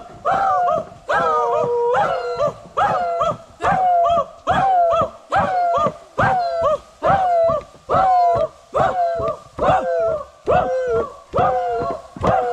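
A group of Papuan war-tribe performers chanting short, rhythmic war cries in unison, about three calls every two seconds, each falling in pitch. One call about a second in is held longer.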